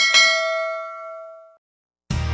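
A single bell ding, the notification-bell sound effect of a subscribe-button animation, struck once and ringing out for about a second and a half before fading away.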